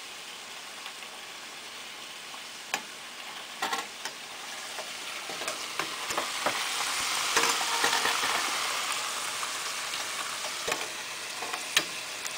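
Thin potato slices (aloo bhaja) deep-frying in a small stainless saucepan of oil, a steady sizzle that swells louder around the middle. A metal spoon stirring them clicks against the pan several times.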